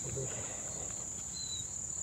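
Steady high-pitched drone of insects in the surrounding vegetation.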